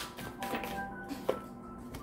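Soft background music of steady held tones, with a few light taps of tarot cards being handled on the table, the clearest about a second in.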